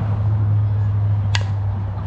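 A softball bat striking a pitched ball once, a single sharp crack about a second and a half in, over a steady low hum.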